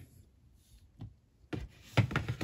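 Hands handling plastic action figures as they are lifted off a display: a faint click about a second in, then rubbing, rustling and small knocks in the last half second, the loudest knock at the end.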